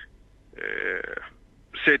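A man's voice on a radio talk show pausing mid-sentence. A short breathy, voiceless sound fills part of the pause, and his speech resumes near the end.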